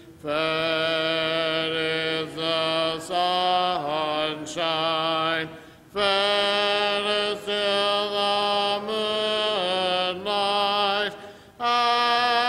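Church congregation singing a hymn a cappella, with no instruments, in long held phrases separated by short pauses for breath.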